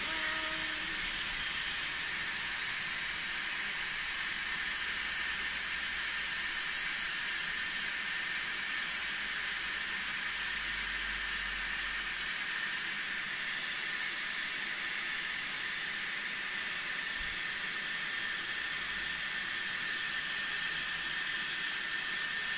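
Dyson Airwrap running steadily: a constant hiss of hot air with a thin high whine, blowing through a section of hair wrapped around its barrel.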